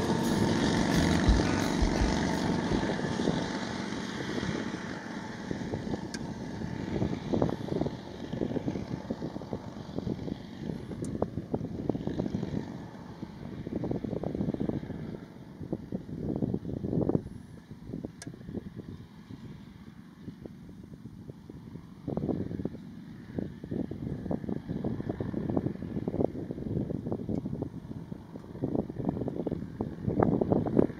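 Antique motorcycle engines pulling away, loudest in the first few seconds and fading into the distance. Gusts of wind buffet the microphone for the rest of the time.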